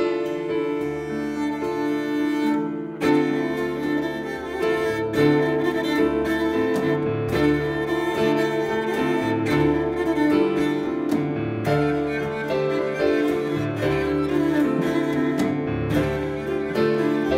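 Cello bowed in long, sustained notes over a piano accompaniment: an instrumental passage of a cello-and-piano duo, with a fresh attack about three seconds in.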